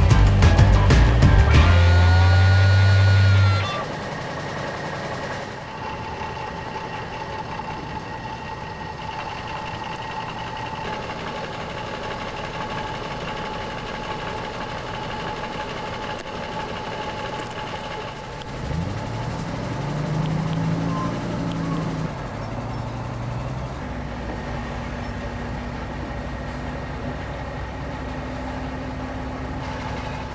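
Music ends in the first few seconds. Then a heavy truck engine runs steadily under load with a faint high whine, revs up with a rising pitch about 19 seconds in, and settles back to a steady run.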